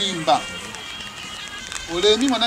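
Speech: a man speaking aloud in short phrases, with a pause of about a second and a half between them.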